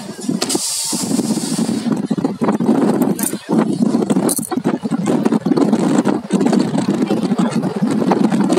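Wind buffeting the microphone of a camera in a moving vehicle, over its road and engine noise, with a louder rush of hiss about half a second in.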